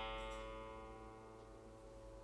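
A single low note on a Collings I-35 electric guitar, pitched around 112 Hz, ringing and steadily fading after being plucked once on the bridge humbucker.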